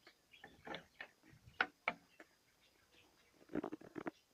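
Metal barrel bolt on a wooden coop door being slid open and the door handled: a string of light clicks and knocks, the sharpest about a second and a half in and a few more just before the end.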